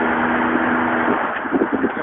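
Old truck's engine droning steadily from inside the cab at about 35 mph, over road and tyre noise. About a second in the engine note drops away as the throttle is released, leaving the road noise.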